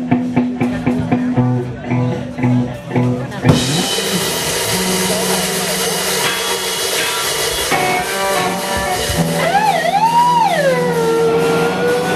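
Live rock band starting a song: drums and bass play a short rhythmic intro, then about three and a half seconds in the loud guitars and the full band come in. Near the end a note bends up and down twice, then settles into a long held tone.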